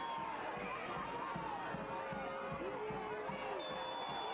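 Soccer stadium crowd murmur with scattered shouts from players and fans during open play. Near the end comes a short, steady, high referee's whistle, stopping play for a foul.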